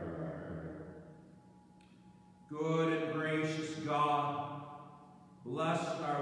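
A man's voice chanting in long held notes: a phrase fades out, a new one starts about two and a half seconds in, and another begins near the end.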